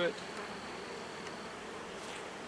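Steady buzzing hum of a honeybee colony around an opened hive.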